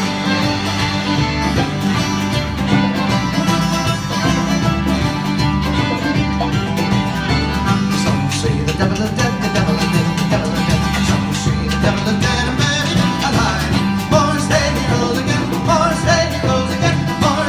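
Live Celtic bluegrass band playing a lively fiddle tune: fiddle lead over strummed acoustic guitar, electric bass and congas, with a steady pulsing beat.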